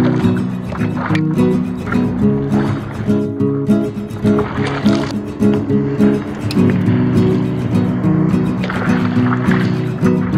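Background music with held, changing notes and a steady beat.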